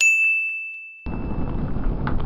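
A single bright ding sound effect, added in editing, that starts suddenly and rings down over about a second. Low wind noise on the microphone comes in about halfway through.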